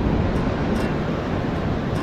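Steady wash of surf breaking on a sandy beach, with wind on the microphone.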